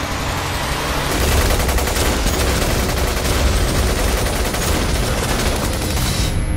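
Rapid, dense gunfire from several rifles at once in a shootout, the volleys thickening about a second in.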